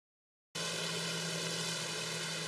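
Hyundai Elec City battery-electric city bus running, with a steady electric whine of several unchanging tones over road noise, starting about half a second in.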